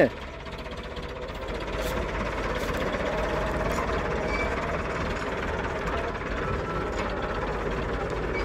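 Diesel engine of an IMT 577 DV tractor running steadily under load, pulling a three-shank subsoiler through the ground.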